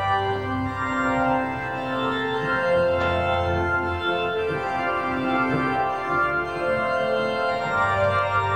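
Organ playing a hymn tune in held chords, the notes moving every half second to a second.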